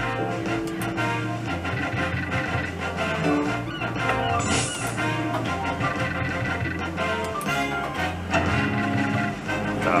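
Slot machine game music from a Merkur Treasure Hunt machine during its free spins: a steady electronic tune with a held bass line and melody notes that change with each spin.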